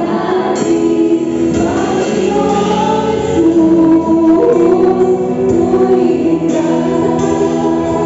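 Live gospel worship song: a group of voices singing together over a drum kit played with sticks.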